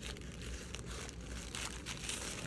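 Grey plastic poly mailer bag crinkling and rustling steadily as hands handle it and work at a folded corner to open it.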